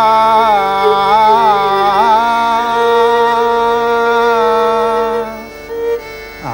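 Hindustani classical male vocal holding long, slightly ornamented notes over a steady tanpura drone, the voice breaking off about five seconds in.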